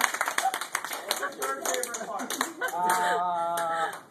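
A small group of people clapping, thinning out after about two seconds, with voices and laughter mixed in. Near the end a voice holds one long steady note.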